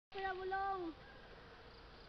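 A high-pitched voice calling out in two short held notes, the second sliding downward, lasting under a second. After it comes a faint steady background.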